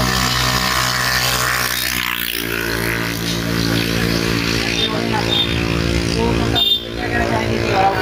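A motor vehicle engine running steadily close by. Its pitch changes about two seconds in, and it breaks off briefly near the end.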